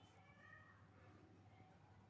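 Near silence: faint room tone, with a faint, brief high-pitched sound about half a second in.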